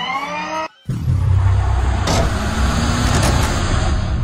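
Logo-sting sound effect. A brief rising whine cuts off, and then after a short gap comes a loud, sustained rumbling whoosh with a sharp crack about two seconds in.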